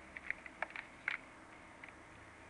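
Computer keyboard keys pressed in quick taps: a run of short clicks through the first second, the loudest just after a second in, and a faint one near the end.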